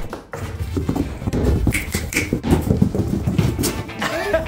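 Baby goats' hooves pattering and scuffling on a rubber stall mat: a quick, irregular run of soft taps and thumps.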